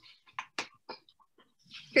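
A few short, faint clicks or taps, three of them clearer in the first second, in a quiet room. Then a woman starts speaking right at the end.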